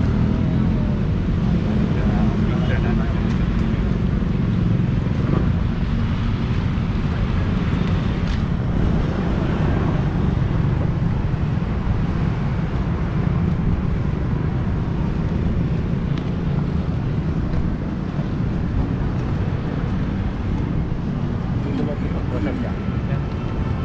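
City street traffic: a steady low rumble of passing cars and motorcycles, with indistinct voices nearby.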